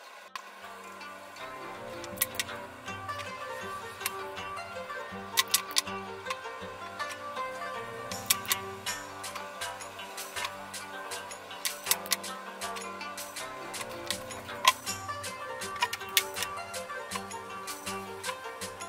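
Background music: a bass line stepping from note to note under sharp, clicking percussion.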